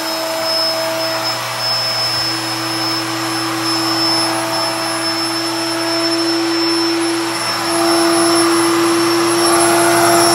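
Built-in electric air pump of a King Koil queen air mattress running, a steady motor hum over a rush of air. About three-quarters of the way through, the hum steps slightly higher in pitch and gets a little louder.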